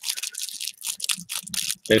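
Wax-paper wrapper of a baseball card pack crinkling and crackling under the fingers in a run of small irregular crackles as the pack is handled for opening.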